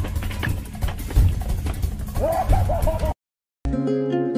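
Loud commotion of people running off, with sharp footfalls and several short yells, cut off suddenly about three seconds in. After a moment of silence, plucked acoustic guitar music starts near the end.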